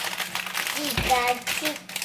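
A plastic bread bag crinkling as it is handled, with a child's voice briefly over it.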